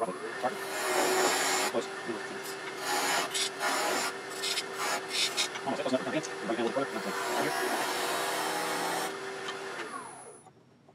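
A lathe tool cutting a spinning wooden spindle on a wood lathe: a rough shaving hiss in repeated strokes with short breaks, over the steady hum of the running lathe. The cutting stops about nine seconds in.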